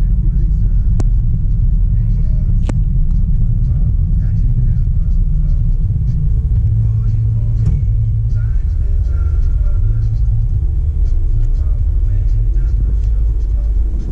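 Steady low rumble of a car's road and engine noise heard from inside the cabin while driving, with two sharp clicks in the first few seconds.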